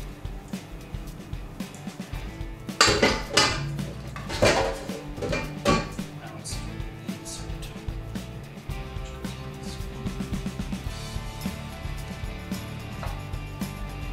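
A spatula scraping and knocking against a metal mixing bowl as the mixture is poured into an ice cream maker's freezer insert, with several sharp clinks between about 3 and 6 seconds in. Background music runs underneath.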